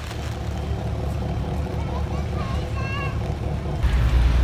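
Passenger ferry engine running with a low, steady drone, with faint voices in the background.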